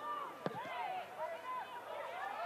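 Football match pitch sound: a single sharp thud of the ball being struck for a corner kick about half a second in, with faint distant shouts from players.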